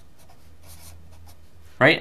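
Felt-tip marker drawing lines on a stack of paper: faint scratching of the tip, mostly about half a second in.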